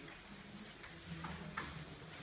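A few faint clicks and paper rustles from choir members handling their music folders, over a low murmur.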